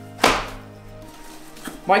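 A small boxed light prism set down on a tabletop with one sharp knock near the start.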